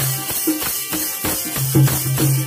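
Instrumental passage of folk devotional bhajan music: jingling hand percussion and low drum strokes keep an even beat of about four strokes a second over steady held notes from an electronic keyboard.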